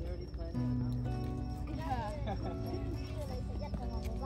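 Background music with held notes over a steady low bass and a gliding, voice-like melody line.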